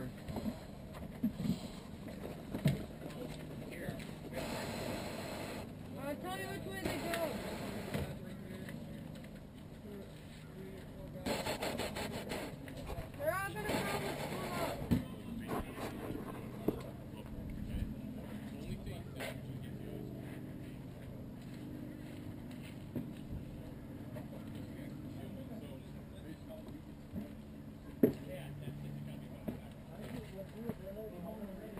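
Indistinct voices of people talking at a distance, in two stretches, over a low steady background, with a few single sharp clicks.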